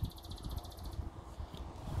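A high, fast trill, evenly pulsed at about ten to twelve a second, from a small animal in the meadow, stopping just before the end. A faint low rumble runs underneath.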